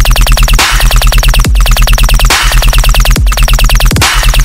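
Dubstep drop with no vocals: heavy sub-bass under a fast stuttering synth, about a dozen short pulses a second, broken now and then by a short falling pitch sweep.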